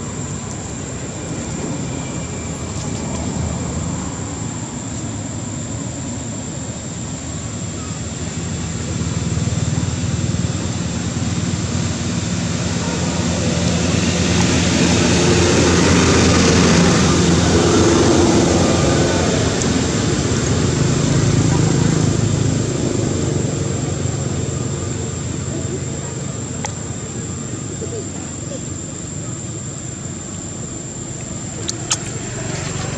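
A motor vehicle passing: a steady engine-and-road noise that grows louder over several seconds, peaks about halfway through, then fades, over indistinct voices.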